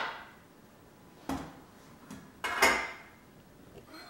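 Pots and pans being handled: a few sharp clanks of cookware knocking together. A ring dies away at the start, another knock comes about a second in, and a double knock comes about two and a half seconds in.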